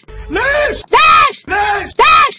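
Shouted Arabic 'ليش!' ('why!') repeated three times in an even, looped rhythm, chopped and edited like a remix.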